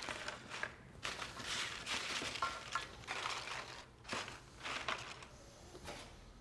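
Tortilla chips rustling and clicking against one another as they are picked up by hand and laid out on a wooden platter: a series of short, irregular rustles.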